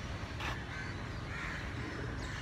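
Crows cawing, a couple of short calls, with a sharp click about half a second in over a steady low rumble.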